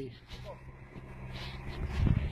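Off-road 4x4's engine idling steadily, a low hum that swells slightly toward the end, with faint voices in the background.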